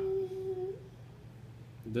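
A voice humming one long steady note with a closed mouth, which stops just under a second in.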